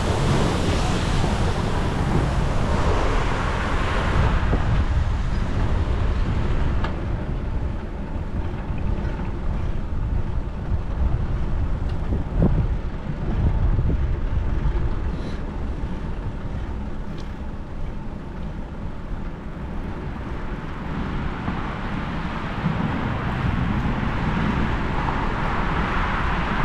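Wind rumbling on a GoPro action camera's microphone while riding a bicycle. Road traffic passes near the start and again near the end, quieter in the middle.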